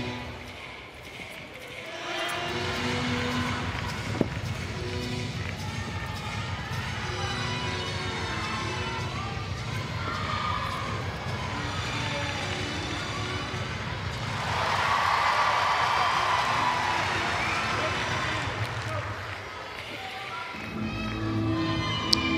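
Arena ambience: music over the public-address system and crowd murmur. About halfway through, the crowd noise swells louder for several seconds before settling. There is a single sharp click about four seconds in.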